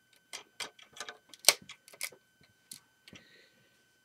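Plastic Lego mech parts clicking and tapping as the model is handled: about seven light, irregular clicks, the sharpest about a second and a half in, with a faint rustle near the end.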